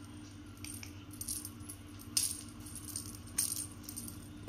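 Small metal bell on a feathered cat wand toy jingling faintly in a handful of short shakes as the toy is flicked about.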